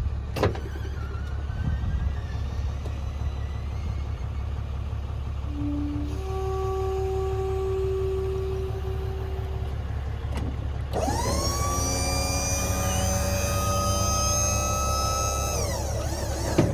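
Electric hydraulic pump motor of a Tommy Gate liftgate running. It starts about eleven seconds in with a whine that rises quickly, holds steady for about five seconds, and drops away as it stops near the end. Fainter steady tones come a few seconds earlier, over a low steady rumble throughout.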